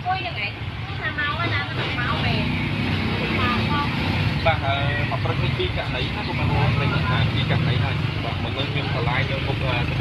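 People talking among themselves over a steady low rumble of motor-vehicle engines.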